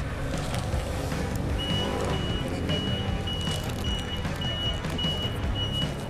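Steady street traffic rumble. From a couple of seconds in, a vehicle's reversing alarm beeps in a steady run of high beeps, about two a second.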